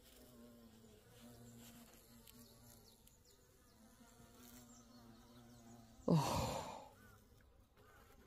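Bumblebees buzzing with a faint, low, steady hum as they feed at honeysuckle flowers. About six seconds in, a short, breathy spoken "oh" is the loudest sound.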